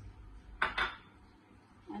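Kitchenware handled: two quick clinks close together a little over half a second in, as a ceramic bowl and the stainless-steel jar of a mixer grinder knock and are set down.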